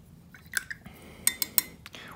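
A handful of light clinks and taps, the first with a brief ring: a paintbrush knocking against a paint pot or a ceramic water mug.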